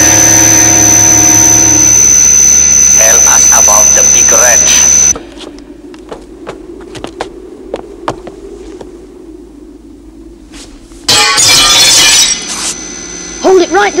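A spinning machine runs with a loud steady whine and a high, piercing tone, then cuts off suddenly about five seconds in. A scatter of faint clicks follows, then a second loud burst of noise lasting about a second near the end.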